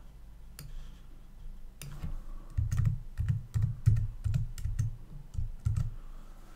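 Typing on a computer keyboard: a single keystroke early, then a steady run of keystrokes, about three a second, from about two seconds in.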